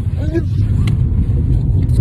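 Inside a moving car: steady low road and engine rumble of the cabin, with a short sharp click about a second in.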